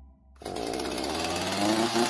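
A chainsaw starts suddenly about half a second in and keeps running, its pitch rising slightly as it revs.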